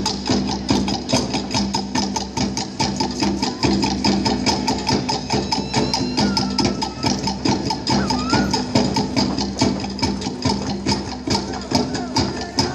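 Fast Polynesian dance percussion: rapid, even strokes on wooden drums keeping a driving rhythm.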